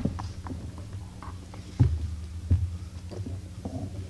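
A pause with a steady low hum from the meeting-room sound system, broken by a few dull thumps near the table microphone: the loudest just under two seconds in, another about half a second later.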